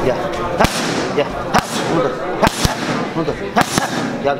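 Boxing gloves striking a trainer's pads in a boxing gym, about six sharp smacks at an uneven pace, with voices underneath.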